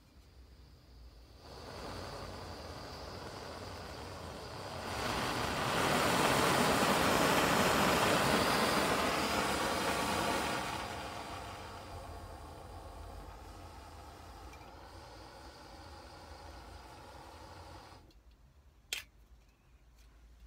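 Small canister camping stove's gas burner: a hiss of gas from about a second and a half in. It gets louder at about five seconds into a steady rush of burning gas, then eases down after about ten seconds and stops at about eighteen seconds. A single click follows.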